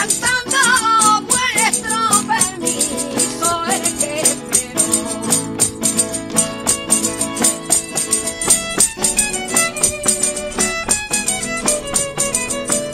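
Live flamenco Christmas carol (villancico flamenco): a woman sings over Spanish guitar, violin, hand-clapping and a tambourine whose jingles keep a fast, steady beat. The singing is strongest in the first few seconds, after which the instruments and the tambourine's rhythm carry on.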